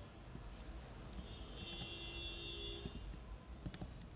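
A few faint clicks of computer keys and mouse as a command is copied and pasted, over a low background hum, with a faint high steady tone through the middle.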